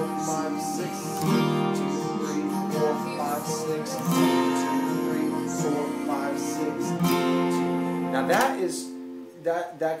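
Acoustic guitar with a capo on the third fret, strummed slowly in a six-beat count along with a slowed recording of the song. The playing stops about nine seconds in and a man starts talking.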